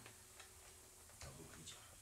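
Near silence in a small room, with a few faint scattered ticks and clicks.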